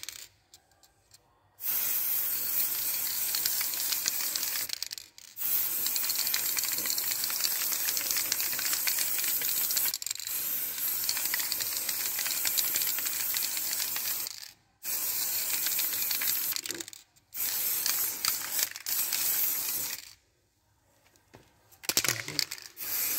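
Aerosol can of gold spray paint hissing in five long bursts of a few seconds each, with short breaks between them as the nozzle is released and pressed again.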